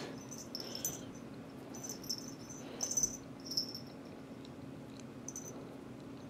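Small bell inside a pink toy mouse on a string jingling faintly in short bursts, about half a dozen times, as a cat bats at it, over a steady low hum.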